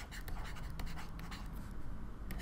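Stylus scratching across a writing tablet in quick short strokes as a word is handwritten.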